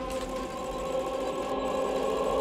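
A sustained electronic drone of several held tones over a faint hiss, slowly growing louder.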